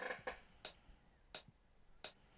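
FL Studio metronome count-in before recording: three evenly spaced sharp clicks, a little under a second apart, with silence between them.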